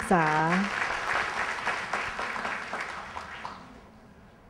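Audience applause, a dense patter of clapping that dies away steadily over about three seconds.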